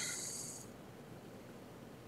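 A man's short exhaled breath, a soft hiss that fades out within the first half second or so, then quiet room tone.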